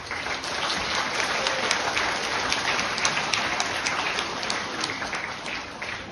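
Audience of schoolchildren clapping. The applause starts at once, holds steady and dies down near the end.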